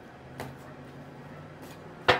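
Quiet room with a faint low hum and a single soft click about half a second in, from tarot cards being handled on a table.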